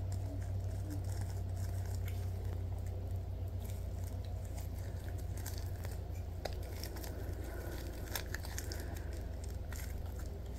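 Latex-gloved fingers rubbing, pinching and squeezing a rubbery Stretch Armstrong toy, giving soft scattered clicks and crinkles, over a steady low hum.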